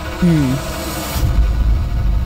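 Dramatic TV-serial background score: a brief falling tone and a high swish in the first second, then a steady low drone.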